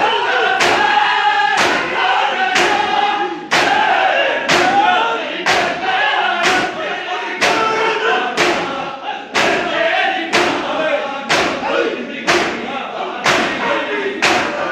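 A crowd of mourners doing matam, striking their bare chests with open hands in unison: a sharp slap about once a second. Men's voices chant a lament over the beat.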